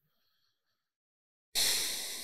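Silence for about a second and a half, then a single breath into a close microphone that starts abruptly and fades away over about a second.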